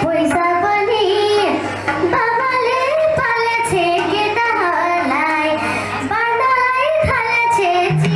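A young girl singing live into a microphone, her melody bending and gliding, over a low steady accompaniment.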